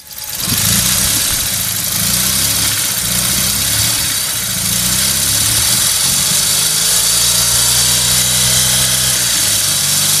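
Honda Z360's 356 cc twin-carburettor straight-twin engine running at a steady idle.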